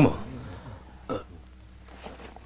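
A man's voice finishing a spoken word, then a quiet room with one short, brief vocal sound about a second in.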